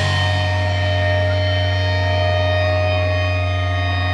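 Amplified electric guitars and bass holding one steady, sustained chord that rings out after the drums stop, with a deep low drone underneath.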